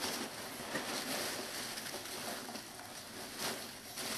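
Hands stirring and digging through polystyrene foam packing peanuts in a cardboard box: a continuous dense rustling and crackling of the foam pieces.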